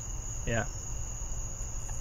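A steady high-pitched whine over a low hum, with a single spoken 'yeah' about half a second in.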